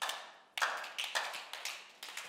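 About half a dozen faint, short taps at irregular spacing, with a little room echo after each.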